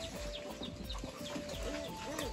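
Domestic chickens clucking and calling: short held notes and small arching clucks, with faint high chirps repeating about four times a second.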